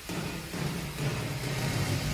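Low, engine-like droning sound effect that comes in suddenly and steps down in pitch, part of a K-pop stage performance's backing track.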